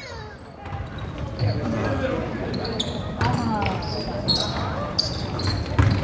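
A basketball being dribbled on a hardwood gym floor, with short sneaker squeaks now and then and voices in the hall behind.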